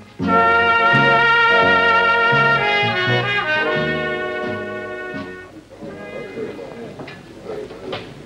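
Closing phrase of a slow brass-led theme tune: a solo cornet holds one long note over a bass line that steps down note by note, then fades out about five and a half seconds in, leaving a much quieter background.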